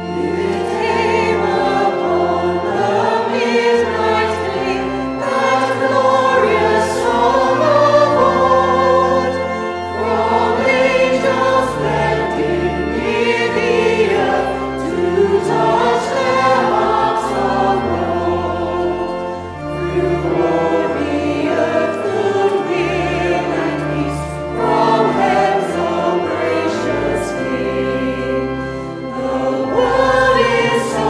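Mixed choir singing a Christmas carol, accompanied by organ holding steady bass notes under the voices.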